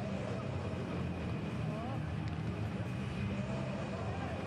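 Live match sound from a football pitch with no crowd: a steady low hum with faint, distant shouts from players.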